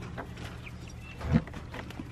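Young backyard chickens making faint short, high cheeps and clucks, with a few light knocks and one thump a little past halfway, the loudest sound.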